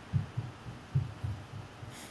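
Soft, low thumps coming in pairs, about one pair every 0.8 s, like a heartbeat, over a faint hum.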